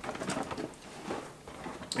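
Faint rustling and light scuffing of a cardboard box being turned over in the hands.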